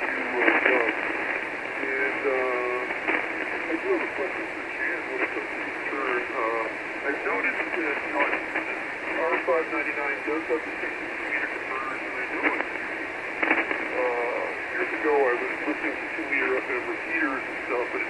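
A voice received on 40-metre lower-sideband amateur radio, heard through the transceiver's speaker: thin and narrow, with a steady hiss of band noise behind it.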